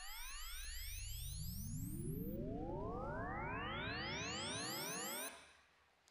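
Samsung's patent-pending simultaneous deconvolution sweep test signal: many overlapping sine sweeps rising in pitch, staggered one after another, from a deep low tone up to a high whistle. It cuts off suddenly about five seconds in. It is used to measure every speaker of the soundbar system at once for auto-EQ.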